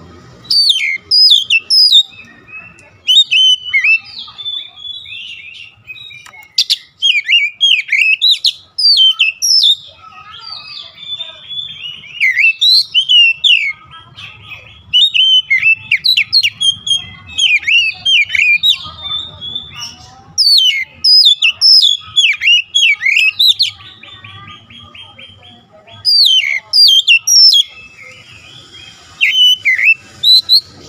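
Oriental magpie-robin (kacer) singing loud bursts of rapid whistled, gliding and chattering phrases, each a second or a few seconds long, with short pauses between them.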